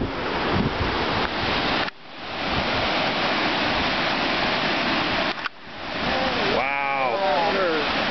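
Steady rushing noise of whitewater rapids far below, mixed with wind on the microphone, dropping out suddenly twice and swelling back. A person's voice is heard near the end.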